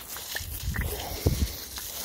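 Garden hose spraying water onto a lawn, a steady hiss, with a low grunt-like sound about a second in.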